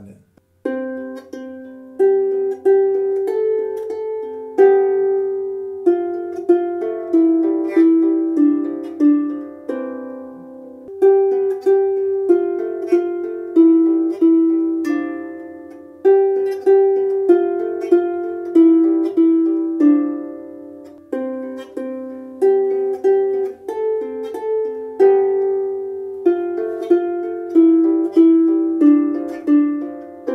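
Rees Harps Sharpsicle lever harp being plucked with both hands: a simple melody with lower harmony notes in the middle range, each note ringing and dying away, the same short phrase played over several times.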